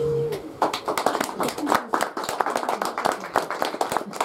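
A woman's voice ends the last word of a poem, then a small audience applauds from about half a second in, with separate claps audible.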